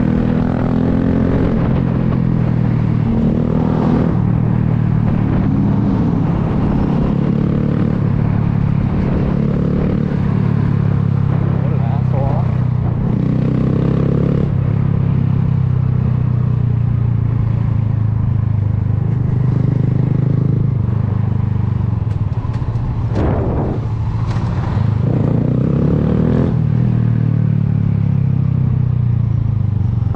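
Honda Grom's 125 cc single-cylinder engine running steadily under way in city traffic, its pitch rising and falling with the throttle, most noticeably about twelve seconds in and again in the last third.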